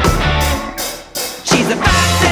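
A rock band playing an instrumental passage. The band drops out for about a second midway, with one short hit in the gap, then comes back in at full volume.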